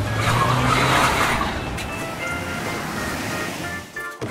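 Racing-car sound effect for a toy car: an engine note rising and a long tyre-skid hiss, loudest about a second in and then slowly fading, over background music.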